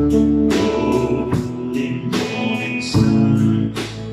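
A small country band playing live: a man singing over acoustic and electric guitars and bass guitar, with a steady drum beat.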